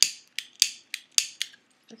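An oversized novelty lighter being flicked over and over: about six sharp clicks of its igniter, a few tenths of a second apart.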